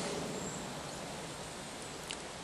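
Woodland background ambience: a steady faint hiss of outdoor noise, with a faint high chirp about half a second in.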